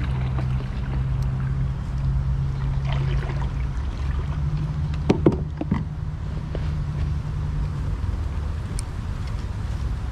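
Small Suzuki 2.5 hp outboard motor idling steadily with a low hum, its pitch stepping up slightly about four seconds in. A short cluster of sharp clicks and knocks comes around the middle.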